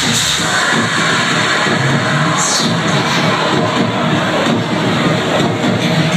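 Electronic dance music over a nightclub sound system, with the crowd cheering and shouting; the deep bass drops away just after the start.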